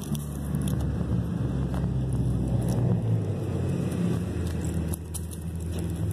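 A low, steady engine hum that comes in at the start and fades away about five seconds in, with a few faint clicks over it.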